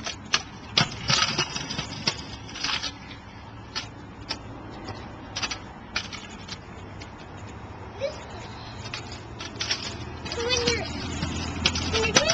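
A Razor kick scooter clacking on a concrete sidewalk: a run of sharp, irregular knocks from its small hard wheels and deck as it is ridden and jumped. A car goes by with a low rumble near the end.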